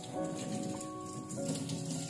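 Tap water running and splashing onto a cutting board and into a stainless steel sink, over background music with held notes.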